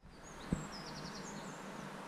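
Outdoor garden ambience fading in: small birds chirping in a quick run of short high notes during the first second, one low thump about half a second in, over a steady low hum.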